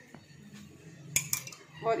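A spoon clinking against a dish twice, a little over a second in, while milk is spooned onto khoya dough.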